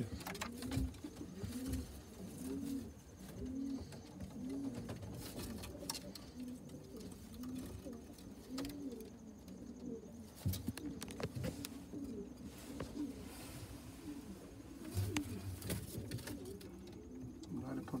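Owl pigeons cooing inside a small wooden loft: a run of repeated low coos, thickest in the first half, with scattered sharp clicks and knocks.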